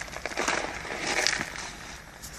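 Gloved hands digging through earthquake rubble: loose gravel and broken plaster crunching and scraping in a run of small crackles, loudest about half a second and a second in.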